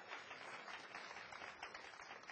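Faint, scattered applause from an audience in a hall, slowly fading.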